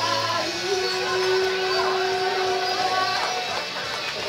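Karaoke song: a woman singing over a backing track, holding one long note that ends a little over three seconds in.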